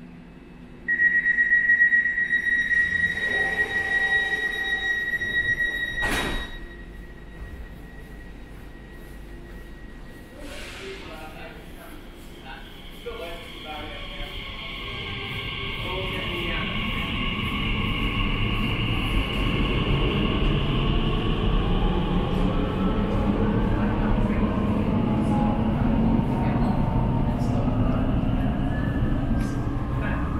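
Elizabeth line Class 345 train departing: a steady high door-closing warning tone for about five seconds ends in a knock as the doors shut. From the middle on, the train pulls out, its rumble and whining traction motors building and then holding steady.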